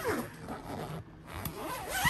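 Zipper on a hanging fabric closet organizer being pulled open, in two sweeps: one near the start and one in the second half.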